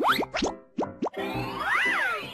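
Intro jingle with cartoon sound effects: a quick run of short rising 'bloop' pops, about four or five a second, then a brief gap, a rushing whoosh, and a whistle that glides up and back down near the end.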